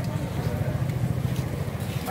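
Steady low rumble of a motor vehicle engine running, under faint background voices.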